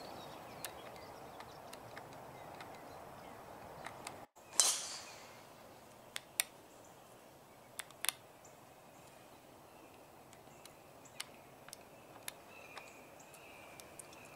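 Quiet outdoor background broken by one sharp crack with a short ringing tail about four and a half seconds in, followed by a few light clicks.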